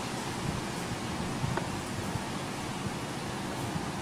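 Steady outdoor background hiss with no distinct source, and a faint click about one and a half seconds in.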